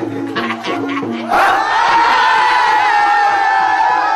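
Asmat tifa hand drums beating an even rhythm, about four strikes a second. About a second in the drumming gives way to a loud, long, high cry from a group of men's voices that is held to the end.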